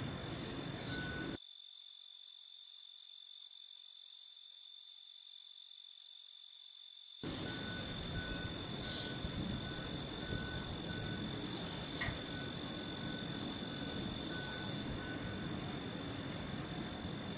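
A steady high-pitched whine made of two tones over a low hiss. The hiss drops out for about six seconds, starting just over a second in, while the whine carries on.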